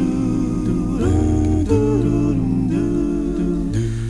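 Multi-track a cappella vocal arrangement sung by one man: layered wordless voices hold sustained chords over a low sung bass line, the harmonies shifting every second or so.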